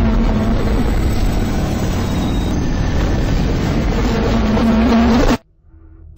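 Loud, dense movie-trailer battle sound design: a continuous heavy rumble that cuts off abruptly about five seconds in.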